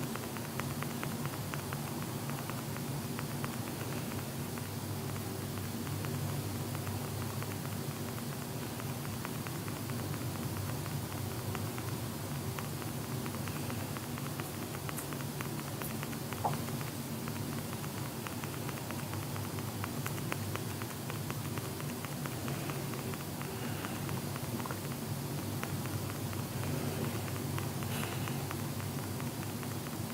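Steady low hum with faint crackling static and hiss throughout, and no speech.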